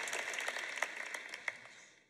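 Large audience applauding, the clapping thinning out and fading away to near silence by the end.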